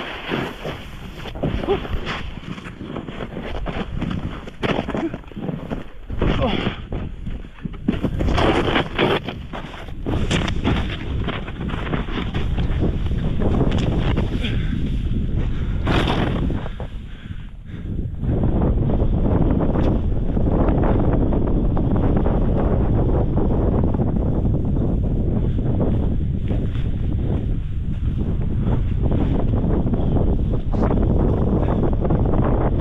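Snowboard riding through deep powder, with wind buffeting an action-camera microphone on a selfie pole. The noise is broken and uneven at first, then becomes a steady loud rush from about eighteen seconds in.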